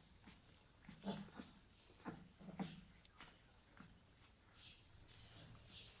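Faint short grunts and squeaks from sleeping 20-day-old Dogue de Bordeaux puppies, a few seconds apart.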